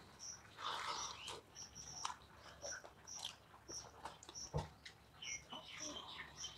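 Close-up eating sounds: wet chewing and lip smacking, with fingers squishing and mixing rice and curry on steel plates, in irregular soft clicks and squelches. A short high chirp repeats in the background about every half second to second.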